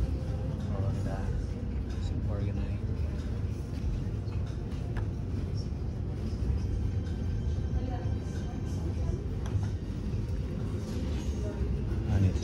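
Shop room noise: a steady low rumble, with faint voices and background music.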